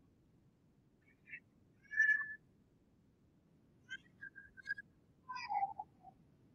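A few short, high whistled chirps: one just over a second in, a louder one at about two seconds, a quick string of them near four seconds, and a last one that falls in pitch near the end, over a faint low hiss.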